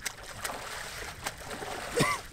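Shallow water splashing steadily as a person lies on his back in a puddle and paddles with his arms.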